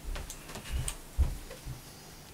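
Footsteps on a carpeted floor and handling of the camera as a man walks up and reaches over it: four soft low thumps about half a second apart, the third the loudest, with a few light clicks.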